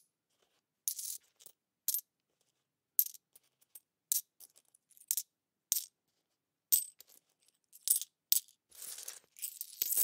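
Coins clinking as they drop, one short metallic clink about every second, with a longer jingling spill of coins near the end.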